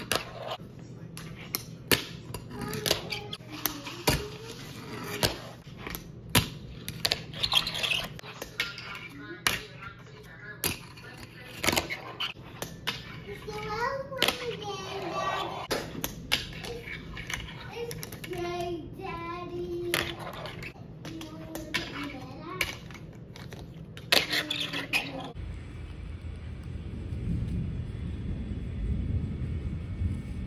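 Repeated sharp clacks and taps of a fingerboard and wooden ramp pieces striking a wooden tabletop, about one a second, with a voice partway through. About 25 seconds in they stop and give way to outdoor background noise with a low rumble.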